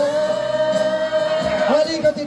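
A singing voice holding one long, steady note for about a second and a half over music, breaking into shorter sung syllables near the end.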